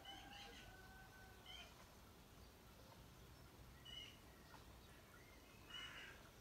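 Near-silent outdoor quiet with a few faint, short high-pitched animal calls spread through it.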